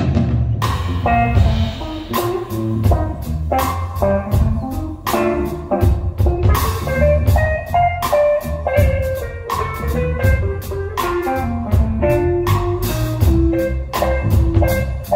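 Live ethno-jazz band playing at full strength: drum kit, bass guitar and keyboard under a sustained duduk melody, with the drums coming in with a hit right at the start.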